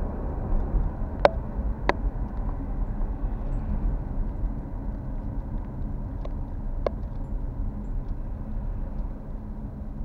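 Steady low rumble of a moving car's engine and tyres on the road, heard from inside the cabin, with a few sharp clicks, the loudest a little over a second in.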